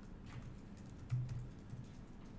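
A few faint clicks from a laptop's keys and touchpad, with one louder dull knock about halfway through.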